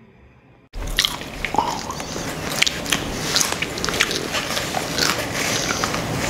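Crunching and chewing, close up, of a crunchy snack eaten by hand from a bowl. It starts suddenly under a second in, as a rapid run of crisp crunches.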